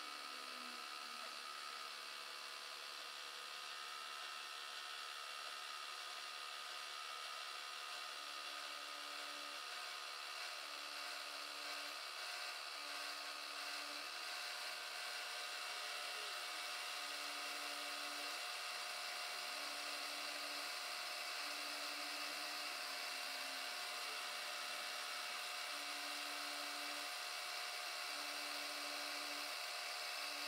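Milling machine running with an end mill cutting a radius into cast-iron castings: a steady machining noise with a constant spindle hum. From about eight seconds in, a short low hum comes and goes roughly every two seconds.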